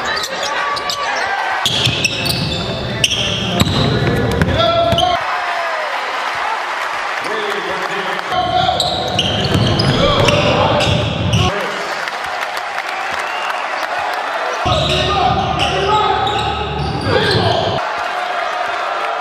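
Basketball bouncing on a hardwood court amid voices and crowd noise in a large echoing hall. The sound changes abruptly every few seconds as one clip cuts to the next.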